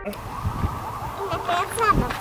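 Wind rumbling on the microphone, then a small child's high-pitched voice sliding up and down in short calls about a second and a half in.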